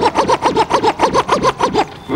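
Rapid turntable scratching: a sample pulled back and forth about nine times a second, each stroke rising and falling in pitch. It stops just before the end.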